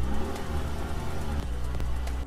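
Car engine sound effect, a steady low rumble with the engine note rising and falling, over background music.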